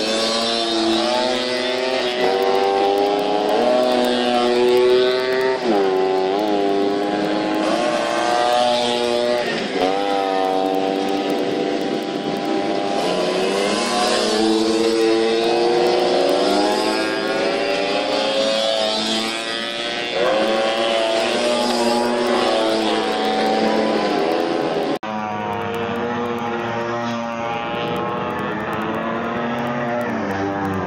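Modified racing Vespa scooters revving hard through a corner, several engines at once. Their pitch rises and falls again and again as the riders shift and pass. About 25 s in the sound cuts to a duller, steadier engine as a single scooter goes by.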